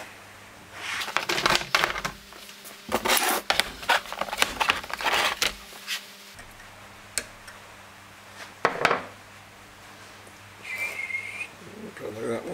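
Clattering of handled objects: a plastic O-ring assortment case being set down and opened, with a run of knocks and rattles in the first half and a few single sharp clicks later. A brief high tone follows near the end.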